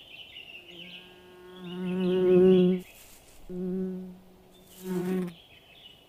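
A flying insect buzzing past in three passes: a long buzz that swells to its loudest about two and a half seconds in and then cuts off, a shorter one about a second later, and a brief one near the end, over steady high chirping.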